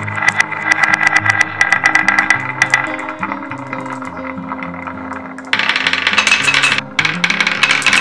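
Glass marbles rolling and clacking against each other along a wooden HABA zigzag slope, a dense run of clicks. About five and a half seconds in, a louder, busier rattling clatter starts as the marbles run down a straight wooden ramp.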